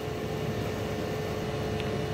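Steady low hum of running equipment with a faint constant tone.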